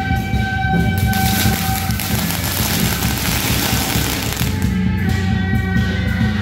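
A string of firecrackers crackling in a rapid, continuous volley for about three and a half seconds, starting about a second in. Underneath and around it is procession music with long held melody notes.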